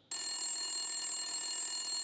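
Telephone ringing: one continuous high ring that starts suddenly and holds steady without a break.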